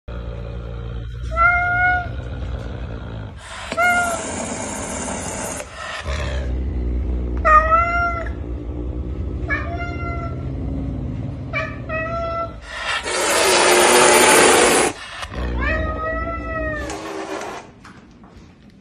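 A caracal hissing in two long, loud bursts, among short cat cries that rise and fall in pitch like meows, about seven of them, spaced through the stretch.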